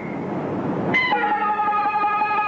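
Peking opera stage music: a noisy clatter, then about a second in a high note that is held steady with strong overtones.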